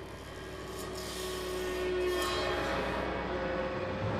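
Contemporary chamber ensemble of winds, strings, percussion and piano playing a noisy, grainy texture rather than clear notes, with a few faint held tones inside it, swelling gradually in loudness.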